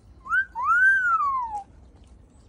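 A two-part whistle: a short rising note, then a longer note that rises and falls.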